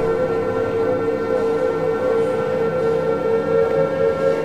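Sustained electronic siren-like tone held on one pitch, wavering slightly, in an ambient electronic soundtrack.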